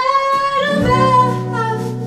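A woman's singing voice holds one long note that swoops up into pitch at the start and eases down near the end. Acoustic guitar accompaniment drops away under the note and comes back in just under a second in.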